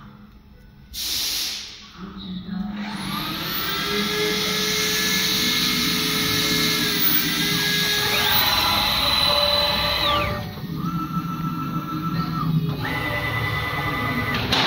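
Metal mould CNC router's motors whining as the machine runs. The pitch glides up, then steps between several steady tones as it moves. A short hiss comes about a second in.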